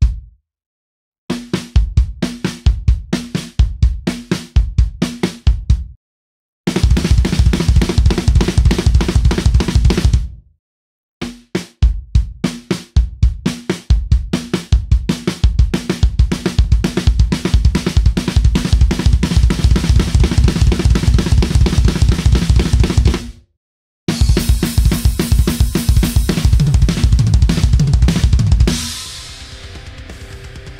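Drum kit played in the RLKK sticking pattern: right hand, left hand, then two bass drum kicks, repeated fast as a fill/solo figure. It comes in several runs with short silences between them, ends in a stretch heavy with cymbals, and drops away about a second before the end.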